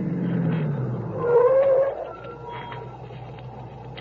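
Car sound effect of a car pulling over and stopping: the engine note sinks as it slows, a short squeal of brakes comes about a second in, then the engine noise dies down.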